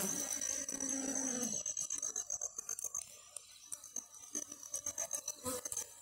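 Western honey bees humming on the comb. The hum drops away after about a second and a half and gives way to quieter scratchy rubbing, then the buzz returns near the end.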